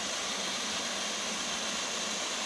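Steady rush of water from Horseshoe Falls, a waterfall pouring over a rock ledge into a rocky creek.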